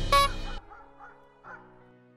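Closing logo jingle: a last bright note, then the music stops about half a second in, followed by two faint short sounds as it dies away.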